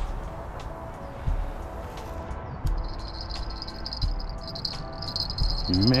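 Spinning reel's drag buzzing in pulses as a hooked fish pulls line, for about three seconds in the middle. Soft background music with a slow low beat runs underneath.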